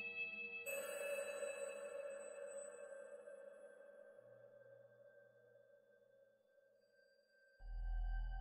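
Mutable Instruments modular synthesizer music: a sustained note with a hissing high shimmer enters about a second in and fades slowly almost to silence, then a deep low note comes in suddenly near the end.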